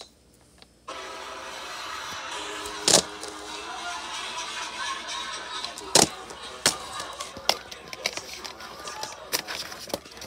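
Plastic DVD case being handled and opened: a series of sharp clicks and snaps, the loudest about three and six seconds in, over steady background music.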